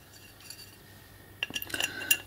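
Light metallic clinks and scrapes from an aluminium hub-motor side cover being handled and offered up to the hub, coming as a quick cluster near the end after a quiet start.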